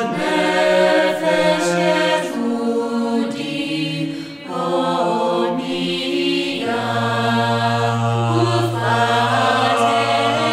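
Choral singing: several voices holding long sustained chords that change every second or two, with a deep low note coming in about two-thirds of the way through.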